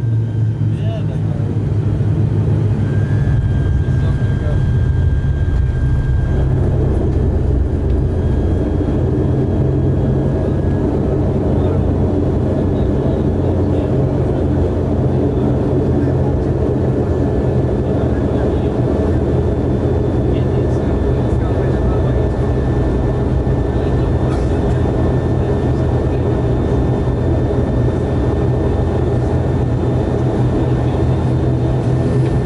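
An ATR 72-600 turboprop's Pratt & Whitney PW127M engine and propeller heard from inside the cabin as the aircraft rolls on the ground. It is a loud, steady low drone with a faint high whine over it, and it grows fuller and busier about six seconds in.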